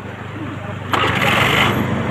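Motor scooter engine running under way with a steady low pulsing. About a second in, a louder rushing noise swells up for about a second and then falls back.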